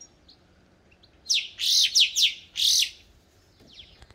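A songbird singing: starting about a second in, a quick run of five or six loud, high, sharp notes, each sweeping steeply down in pitch, over under two seconds, then a couple of faint notes near the end.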